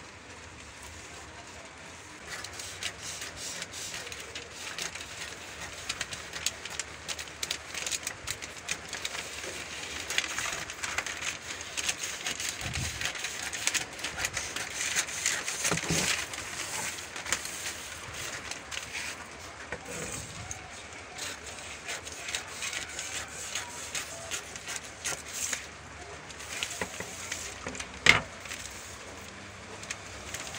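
Scissors cutting through brown pattern paper, with the sheet rustling and crackling as it is turned and handled. A sharp knock near the end.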